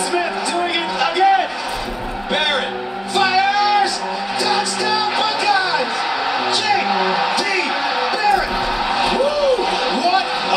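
Sports highlight-reel soundtrack: music with a steady beat under excited, shouted football play-by-play commentary.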